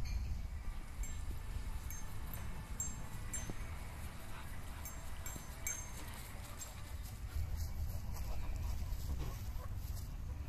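Short, high bird chirps come now and then over the first six seconds, over a steady low rumble on the phone's microphone.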